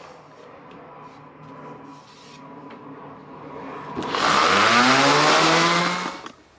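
Electric sander switched on about four seconds in, its motor whine rising as it spins up under a loud sanding hiss, sanding the wooden picture frame smooth.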